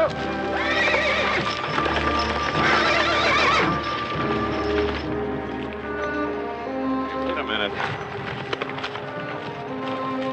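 Horses whinnying twice in the first few seconds, with hoofbeats, over orchestral film-score music.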